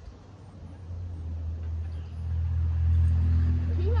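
A low, steady engine rumble that swells about a second in and is loudest near the end.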